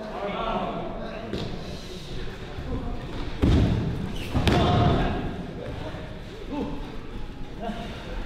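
Two heavy, booming thuds of bodies striking a wrestling ring's mat, about a second apart, the second with a sharp slap on top, over the voices of the crowd.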